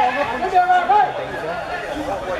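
Several men's voices shouting and calling out, one call held loud and high near the middle.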